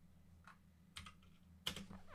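Near silence, with three faint short clicks at the computer: about half a second in, about a second in, and just before the end.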